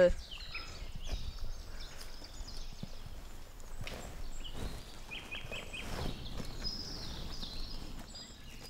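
Birds chirping in short, scattered calls, including a quick run of four chirps about five seconds in, over a low steady rumble of outdoor background noise.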